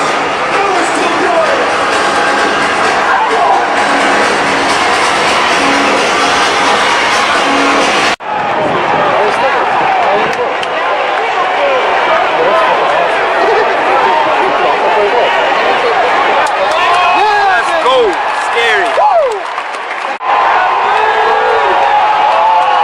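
Football stadium crowd noise: many voices talking and shouting at once, with some shouts rising and falling, and music over the stadium sound system in the first part. The sound drops out abruptly for a moment twice, about eight seconds in and about twenty seconds in, where the recording is cut.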